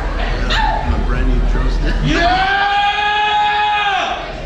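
A person's voice calling out over a bar's background noise: a short falling yelp about half a second in, then a long held, high-pitched call of about two seconds that swoops up into its note and stops abruptly.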